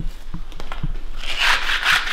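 A concrete floor being scrubbed by hand: a few light knocks in the first second, then a rough scraping rub from a little past the middle.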